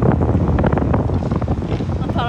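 Wind buffeting the microphone of a camera mounted on an open-air slingshot ride's capsule high in the air: a loud, gusty rumble.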